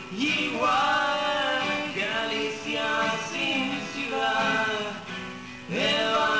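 Male voice singing a song to two acoustic guitars. The singing drops back briefly just before the end, then comes in again.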